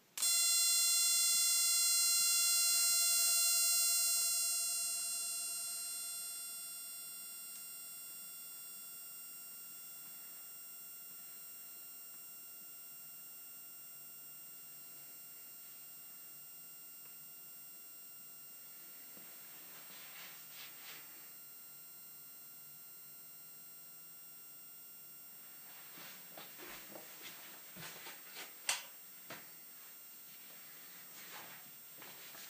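Denso slim HID xenon ballasts igniting a pair of 3000K xenon bulbs: a high-pitched electronic whine starts suddenly, is loudest for about four seconds, then fades to a faint steady whine as the lamps warm up. A few light clicks and rustles come near the end.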